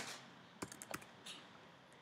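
Faint computer keyboard keystrokes: a handful of separate key clicks as a short word is typed, the first the loudest, the rest spaced over about a second and a half.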